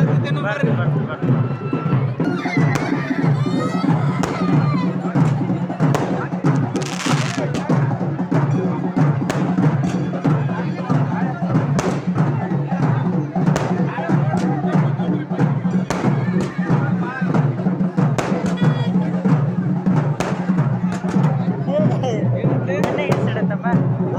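Loud festival din: percussion and music mixed with many voices of a crowd. Sharp cracks are scattered through it.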